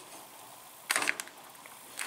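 Corrugated plastic hose being handled and slid into place against a bracket: a short cluster of light clicks and scraping about a second in, otherwise quiet.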